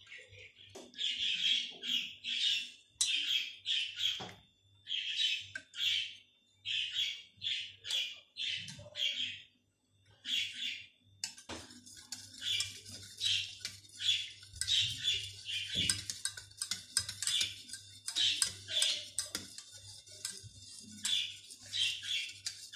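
Wire whisk scraping around a stainless steel saucepan as milk, cream and chocolate are stirred while the chocolate melts: short scratchy strokes about once a second, coming faster and closer together from about halfway.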